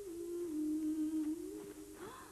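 A single wordless hummed note, held steady. It steps down in pitch about half a second in and climbs back up near the end.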